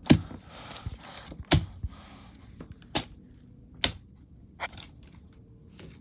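Paper cutouts being handled and knocked about: about five sharp taps or knocks at irregular intervals, with soft paper rustling between them.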